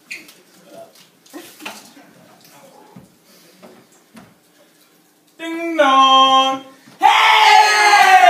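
A person's voice crying out twice: a long held cry that steps down in pitch about five and a half seconds in, then a louder cry sliding down in pitch near the end. Before that only faint rustling and small knocks.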